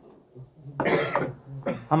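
A person coughs once, briefly, about a second in; a man's speech starts near the end.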